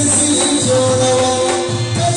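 Live Pashto folk music: a male singer holding sung notes over a harmonium, with a hand drum keeping a steady beat.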